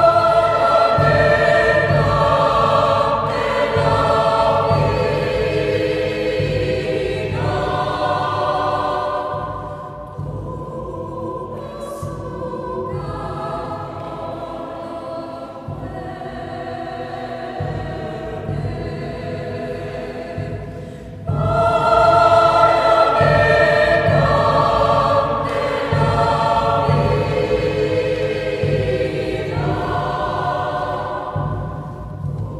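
Mixed choir singing a vidala, an Argentine folk song, in several voice parts. It sings loud at first, drops to a softer passage about ten seconds in, and comes back loud about twenty-one seconds in.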